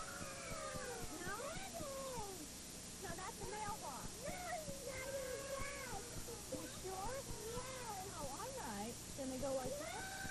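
Several young children's voices chattering and calling out over one another, high-pitched and wavering, unintelligible on worn VHS tape audio, over a steady low hum.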